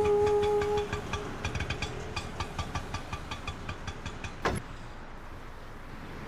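Auto-rickshaw engine running, with a rapid irregular ticking over a low noise. The ticking thins out after about four seconds, and there is one sharp knock about four and a half seconds in. The tail of background music fades out in the first second.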